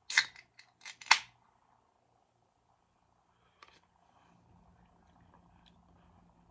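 Aluminium can of caramel Coca-Cola coffee opened by its pull tab: a short crack and hiss at the start, then a few sharp metallic clicks over the next second. Faint sipping follows near the end.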